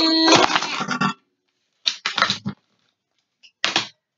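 Cards and small toys handled inside a metal tin case: two short rattling bursts, about two seconds in and near the end, after a voice trails off in the first second.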